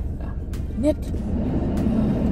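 Steady low rumble of a running car heard from inside its cabin, with a short click about half a second in.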